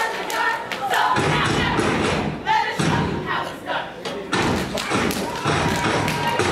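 Step team stepping on a stage: rhythmic foot stomps and hand claps, with voices over them.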